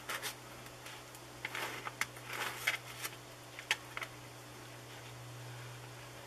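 Light clicks and scrapes of a model aircraft's cowl flaps being worked open and closed by hand with wire pushrods, the small and large flaps clicking as they move over one another, scattered through the first four seconds. A steady low hum runs underneath.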